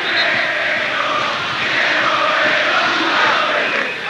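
Stadium crowd of football supporters chanting together, a steady loud mass of voices with no single voice standing out.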